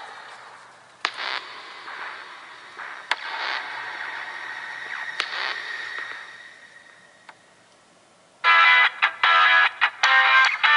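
A video's intro and music playing from a Samsung Galaxy S4's loudspeaker through a Seidio Obex waterproof case, which muffles it only a little with a tad of distortion. First comes a soft swelling noise with a few sharp clicks, then a short pause, then loud music starting about eight and a half seconds in.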